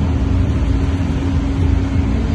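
Steady mechanical hum with a heavy low rumble and one constant low tone.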